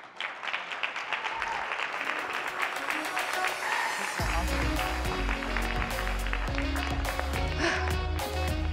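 Audience applause greeting guests onto a stage. About four seconds in, walk-on music with a heavy bass line and beat starts and plays under the clapping.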